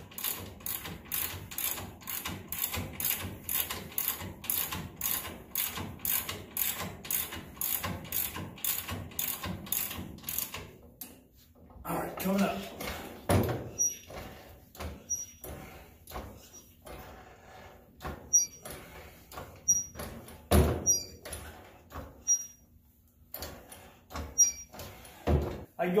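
Ratchet wrench clicking in quick, even strokes, about two or three a second, as a lower ball joint nut is tightened; it stops about eleven seconds in. After a short pause come the irregular knocks and clunks of a hydraulic floor jack being pumped by its long handle, with one heavy thump a little past the twenty-second mark.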